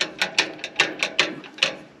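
Quick run of metallic clicks, about five a second, from the Massey Ferguson 265 tractor's gear lever being worked into neutral.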